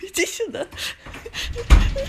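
A person's voice making short wordless vocal sounds in quick bursts, with a loud low thump shortly before the end.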